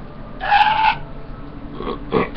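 A man's high-pitched, raspy squeal, about half a second long, a little way in, followed by fainter grunting sounds near the end.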